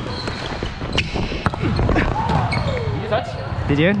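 A volleyball being struck and bouncing on a hardwood gym court: several sharp slaps about a second in, echoing in a large hall, among players' shouts and calls.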